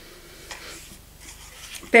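Soft, irregular rubbing and handling noise of a lipstick being handled.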